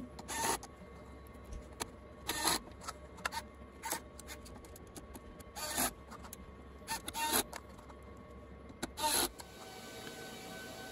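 Bosch cordless screwdriver driving screws into a server's sheet-metal chassis in short spins: about seven brief whirs spread a second or two apart.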